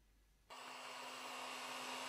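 Near silence, then about half a second in a steady whirring hum with a low steady tone begins: the cooling fans of an idle Malyan M150 3D printer just after a print.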